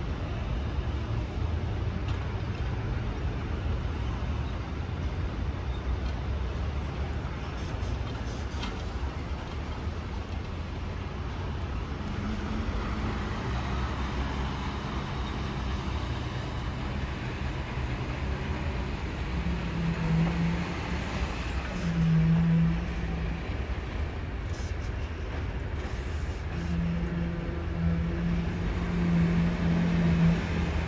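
Steady low rumble of traffic and construction-site machinery. In the second half a motor's hum swells several times, loudest near the end.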